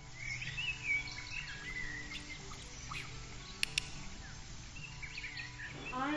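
Birds chirping in a run of short, rising and falling calls over faint steady music, with two sharp clicks a little past the middle.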